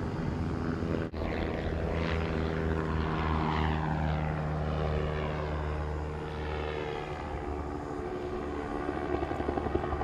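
AC-20 Arrowcopter gyroplane in a display flight overhead: a steady drone from its engine and pusher propeller. The pitch sweeps downward as it passes, and the sound briefly cuts out about a second in. An uneven pulsing beat comes in near the end.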